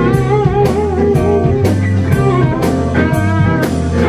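Live blues band playing: a lead electric guitar carries the melody with bent, wavering notes over a drum kit with steady cymbal strokes, low bass notes and keyboard.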